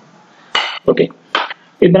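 Three short, sharp clinks about 0.4 s apart, then a man begins speaking near the end.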